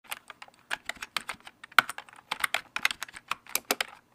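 Computer keyboard typing sound effect: a run of quick, uneven key clicks, about six a second.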